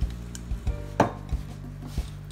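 Hands mixing wet flour into dough in a stainless steel bowl, with a handful of knocks against the steel, the loudest about halfway through with a short metallic ring.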